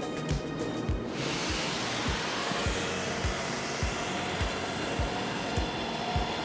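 A DJI Agras T40 spreader's hopper outlet starts releasing a stream of cat litter granules into a lined bin, a steady hiss that begins about a second in and holds, as the flow calibration runs. Background music with a steady beat plays underneath.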